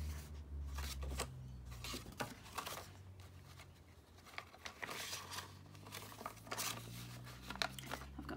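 Paper and cardstock being handled: irregular rustling and crinkling, with light taps, as journal pages and a folded card are opened and turned.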